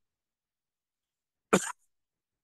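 Silence, then a man's single short cough about one and a half seconds in.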